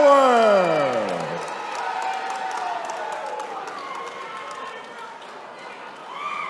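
A ring announcer's drawn-out call of the winner's name, the last syllable gliding down in pitch and ending about a second and a half in, over crowd cheering and clapping that fade away.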